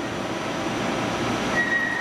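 Mazak Megaturn a12nx vertical turning center running with its table turning: a steady mechanical noise, with a thin high whine coming in near the end.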